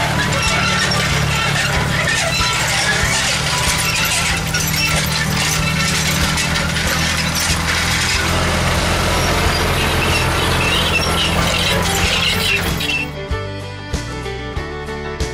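John Deere tractor engine running while it pulls a disc harrow and drag that clatter and rattle over rough ground. About a second before the end this gives way to fiddle-led bluegrass music.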